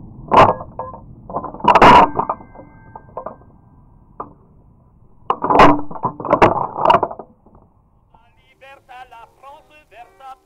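Bolt of a Lebel Mle 1886/93 rifle worked by hand, giving sharp metallic clacks as it opens and closes. There is one group of clacks in the first two seconds and another about five to seven seconds in.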